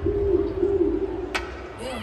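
Electronic dance music breakdown played over a festival sound system: a wavering, cooing mid-pitched synth tone fades out with the deep bass pulled back, and a short sweeping sound comes near the end.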